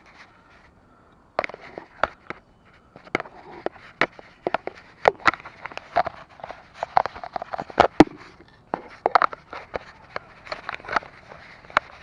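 Bicycle rattling over a rough path, with irregular sharp knocks and clicks from the frame and the camera mount. The rattling starts about a second and a half in.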